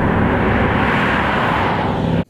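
A loud, steady rushing noise with no pitch or rhythm.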